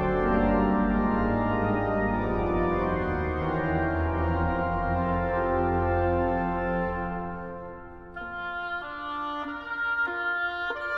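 Organ playing loud sustained chords over a deep bass pedal line, with a brassy reed tone. About seven seconds in it dies down and then picks up again with lighter, higher notes.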